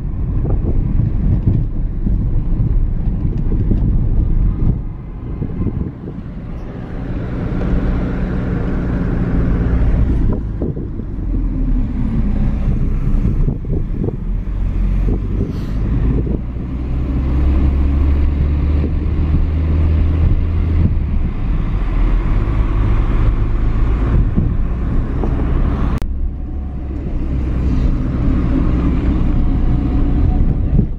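Car engine and road noise heard from inside the cabin while driving in city traffic. The engine note rises and falls as the car speeds up and slows, and is loudest a little past the middle.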